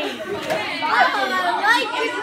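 Children's voices chattering and calling out over one another.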